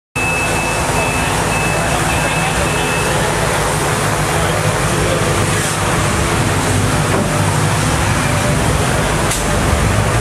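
Hennessey Ford GT700's supercharged 5.4-litre V8 idling steadily. A high electronic beep repeats about twice a second for the first three seconds.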